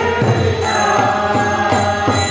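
Devotional kirtan: a group of voices chanting a mantra together over repeated drum strokes and ringing hand cymbals.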